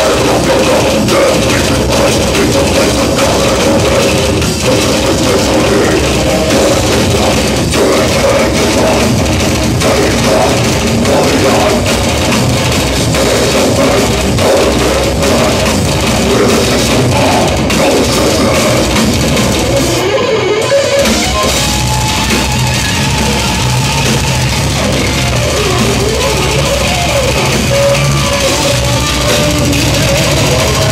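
Death metal band playing live at full volume: distorted electric guitars and bass over fast drumming on a full kit. The drums drop out for about a second roughly two-thirds of the way through.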